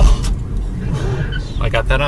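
Steady low road and engine rumble heard from inside a moving car's cabin, with a person's voice near the end.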